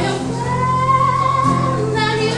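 A woman singing with an acoustic guitar accompanying her; about half a second in she holds one long note that bends slightly upward.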